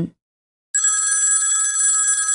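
Telephone ringing: one steady ring of several high bell-like tones, starting about three-quarters of a second in.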